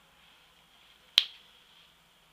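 A single sharp click a little past a second in, from the eyeshadow palette and brush being handled; otherwise quiet room tone.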